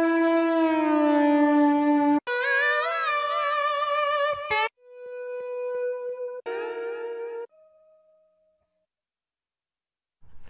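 Slide guitar samples from Big Fish Audio's Impulse cinematic guitar library playing through Kontakt: a held note that slides down in pitch, then a higher wavering note, then two shorter notes, the last fading out about eight seconds in.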